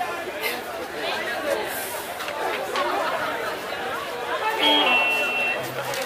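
Chatter of many voices from an outdoor audience talking among themselves between songs, with one short held instrument note sounding about five seconds in.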